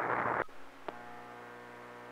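CB radio receiver hissing with band static until about half a second in, when the static cuts off suddenly as an incoming station keys its carrier. What is left is a steady, buzzy hum riding on the open carrier, with one click a little later.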